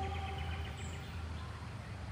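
Quiet outdoor background: a steady low hum, with faint thin chirps in the first second.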